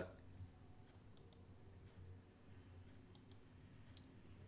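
Near silence with faint computer mouse clicks: two pairs of quick clicks, about two seconds apart.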